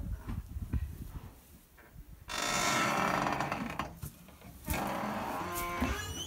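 Drawn-out calls from a horse, heard twice: the first starts suddenly a little over two seconds in, after quieter rustling and knocks, and the second follows at once near the end.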